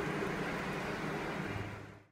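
Steady background noise, a hiss and hum with no distinct events, fading out over the last half second.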